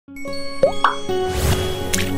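Animated logo intro sting: held music tones with two quick rising plops about half a second in, then a swelling whoosh and a sharp click near the end as the icons burst out.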